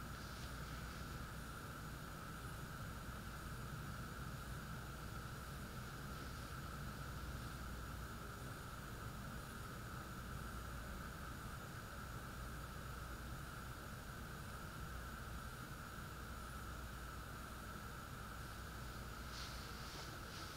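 Steady background hiss with a faint high whine and a low hum: room tone, with no distinct sound events.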